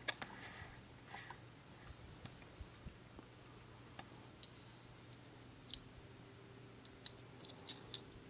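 Faint small plastic clicks and taps as a Beyblade Burst layer is handled and turned in the fingers, with a quick run of several sharp ticks near the end.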